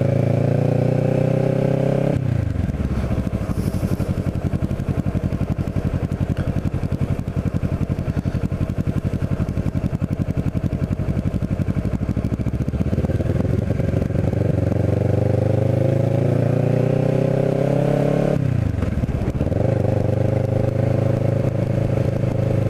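Kawasaki Ninja 650R parallel-twin engine heard from the rider's seat while riding. The revs climb under throttle, fall away sharply about two seconds in, and run low and steady for about ten seconds. They then climb again for about five seconds and fall away sharply once more near the end.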